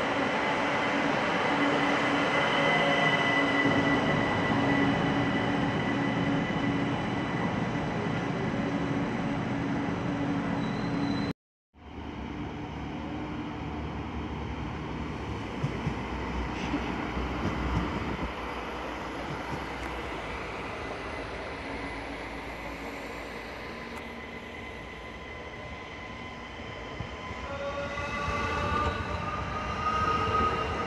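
ÖBB electric multiple unit running at the platform, its traction motors giving a steady high whine over a rumble. After an abrupt cut, a quieter train rumbles on a farther track. Near the end another ÖBB electric train runs close by, its motor tones climbing in pitch as it gets louder.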